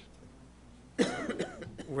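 A man's cough at a meeting table, sudden and brief, about a second in, after a moment of quiet room tone.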